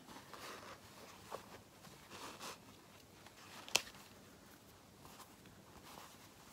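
Faint rustling and scratching of quilted cotton fabric being handled as basting threads are pulled out of it, with one short, sharp click a little past halfway.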